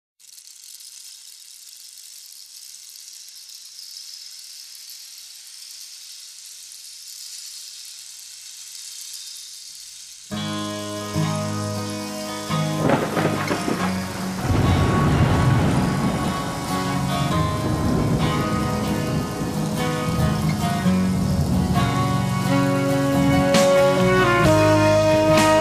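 Steady hiss of rain falling for about ten seconds, then a blues-rock band's intro comes in and grows louder and fuller a few seconds later.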